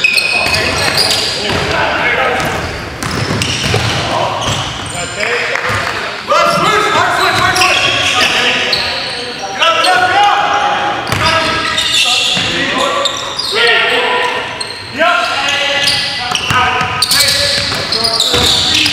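Live sound of an indoor basketball game: a basketball bouncing on a hardwood court among players' shouts, echoing in a large gym.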